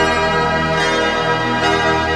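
Electronic synthesizer music with sustained, bell-like chords; the bass thins out briefly in the middle.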